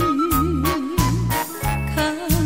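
Taiwanese Hokkien enka-style pop song, 1993 studio recording: a held note with a wide, even vibrato over a steady accompaniment of low bass notes about twice a second.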